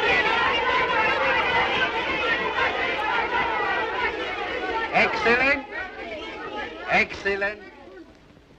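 A class of children all calling out answers at once, a babble of overlapping voices that stops about five and a half seconds in, followed by a couple of short lone calls that fade out.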